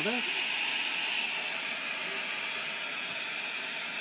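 Steady hiss of a glassworker's bench gas torch flame as glass rods are heated in it.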